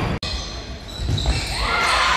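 Sounds of a handball game in an echoing sports hall: the ball bouncing on the court floor and players calling out. The sound cuts out for an instant near the start.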